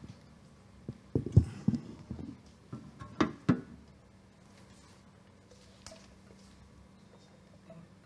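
Handheld microphone being handled and put down: a cluster of thumps and knocks in the first few seconds, then quiet room tone with a faint hum.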